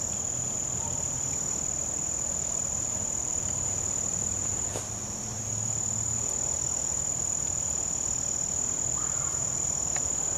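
Chorus of crickets and other insects: one steady, continuous high-pitched trill.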